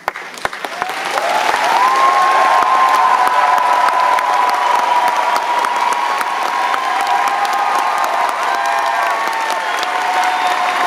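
A theatre audience starting to applaud as a song ends: a few scattered claps at first, swelling within about two seconds into loud applause with long, held cheers.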